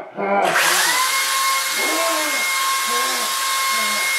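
Electric hair dryer switched on about half a second in: its motor spins up quickly, then runs with a steady whine over a loud rush of air.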